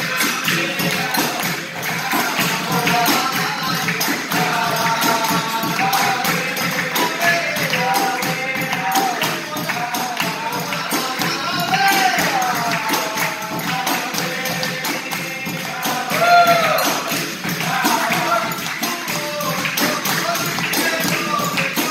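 Capoeira roda music: voices singing over an atabaque drum, a jingling pandeiro and steady hand clapping, keeping an even rhythm throughout.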